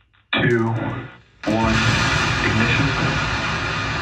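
A voice calls the last of the countdown, then about a second and a half in Starship SN10's three Raptor engines ignite with a sudden, loud, steady rumble that carries on through liftoff, heard over the live-feed audio.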